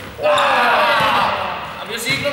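Several young men's voices shouting together in a reverberant sports hall: one long shout, starting sharply just after the start and falling in pitch over about a second.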